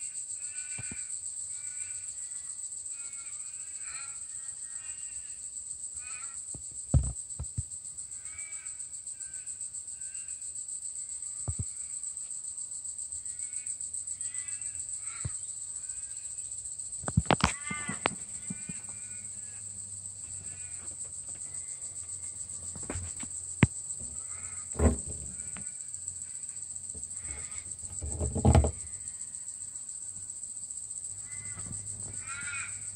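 Outdoor ambience heard through the cab: a steady high insect drone with birds chirping on and off throughout. Several knocks and bumps break through, the loudest about 17 and 28 seconds in.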